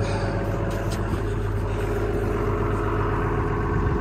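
Doosan Solar 140 LC-V excavator's diesel engine running steadily at an even speed, after a no-start fault was cured with new ignition feed wiring.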